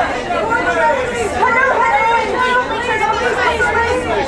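Several voices chattering and talking over one another, a steady babble with no single clear speaker.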